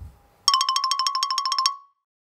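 A bell ringing rapidly for just over a second, one bright tone struck many times a second, then ringing out briefly: a sound effect in the manner of an oven timer's bell.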